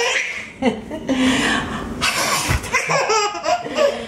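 Baby laughing hard in repeated breathy bursts with short pitched catches between them.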